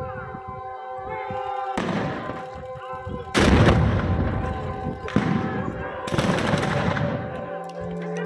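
Black-powder blank shots from period guns: four loud reports spread over a few seconds, each with a long rolling rumble. The second report is the loudest and longest.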